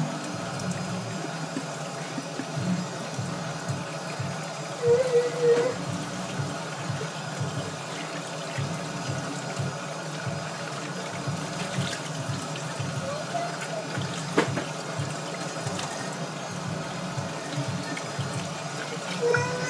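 Kitchen faucet running into a stainless steel sink while a glass jar is rinsed and turned under the stream, with music playing in the background.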